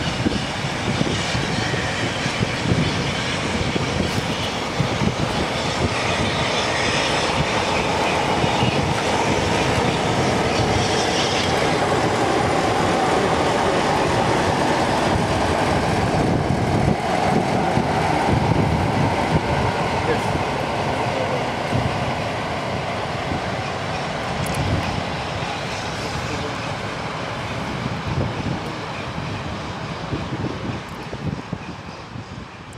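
Passenger coaches of a heritage excursion train rolling past at speed: a continuous rumble and rattle of wheels on rail, loudest in the middle and easing off near the end as the last vehicle passes.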